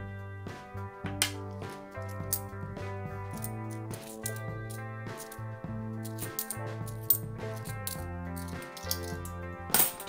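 Light metallic clicks and clinks of 50p coins handled and slid against each other in the hand, coming irregularly every second or so, over steady background music.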